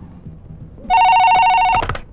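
Electronic telephone ringing once: a rapidly warbling two-tone trill that starts about a second in and stops sharply just under a second later.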